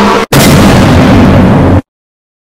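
A loud, heavily distorted burst of noise like a blown-out explosion sound effect, starting just after a brief gap and lasting about a second and a half before cutting off suddenly into dead silence.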